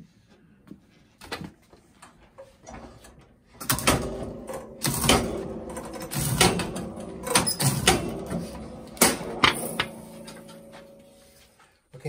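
Picture-frame miter chopper cutting a wood strip to a 45-degree miter: a few light knocks as the strip is set against the fence, then a run of about a dozen sharp chops from about four seconds in until shortly before the end, each with a brief ringing tail.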